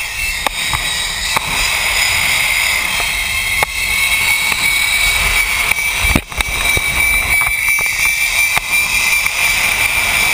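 Zipline trolley pulley running along the steel cable, a steady high whine over the rush of wind on the microphone, with scattered sharp clicks and a knock a little past halfway.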